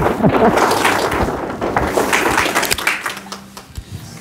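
Handheld microphone rubbing and knocking against quilted coats during a hug: a run of rustling, taps and thumps that dies down after about three seconds.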